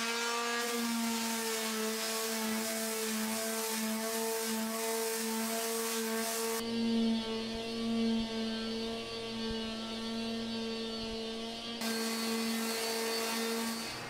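Electric palm sander with 120-grit paper running steadily over a bare wood dresser top. It winds up at the start and cuts off near the end. This is the final smoothing pass before water-based stain.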